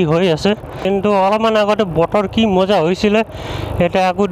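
Mostly a person talking, over steady wind and road noise from a moving motorcycle; the talk breaks off briefly near the end, leaving only the riding noise.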